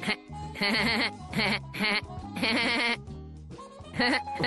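Cartoon voices laughing in three short, quavering bursts over background music.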